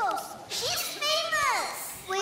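Children's voices speaking and exclaiming, high-pitched, with sweeping rises and falls in pitch.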